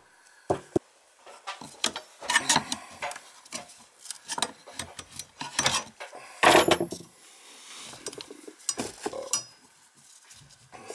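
Copper water pipe being cut by hand: irregular metallic clicks and scraping, loudest about six and a half seconds in.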